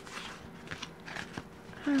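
Paper and sticker sheets rustling and crinkling as they are shuffled through by hand, with a few light ticks and taps.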